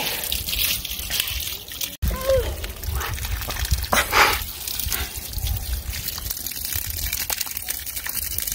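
Water from a garden hose running and splashing into muddy soil, a steady trickling splash throughout.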